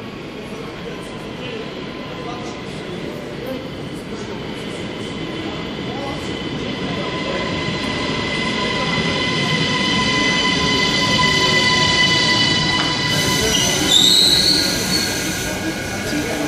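ÖBB Cityjet electric multiple unit (Siemens Desiro ML) pulling into an underground station, growing steadily louder as it approaches, with a steady electric whine building up. About three-quarters of the way through, a high squeal glides upward as the train slows alongside the platform.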